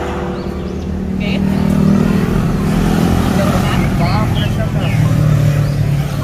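A motor vehicle's engine running close by, growing louder about a second in and then holding steady, with faint voices in the background.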